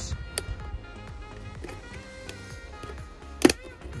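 Background music with steady tones, and a sharp snap about three and a half seconds in as a car wing mirror glass's plastic retaining clip lets go while the glass is pulled outward.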